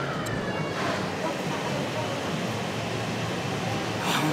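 Busy indoor ambience: a steady low hum with faint background voices.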